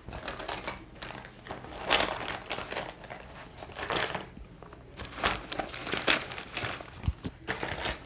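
Off-camera rummaging: irregular bursts of rustling and crinkling, about every second or two, as craft supplies and packaging are handled and searched through.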